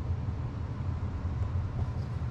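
A steady low rumble with no distinct events in it.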